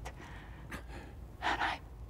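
A woman's close, breathy gasps: a short breath about a third of the way in, then a longer two-part intake of breath near the end, over a low steady hum.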